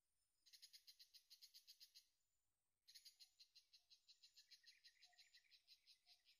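Faint, fast, even trill from a small calling animal, in two bouts: the first about a second and a half long, and the second starting just before halfway and running on about four seconds. It pulses about eight to ten times a second and is high-pitched.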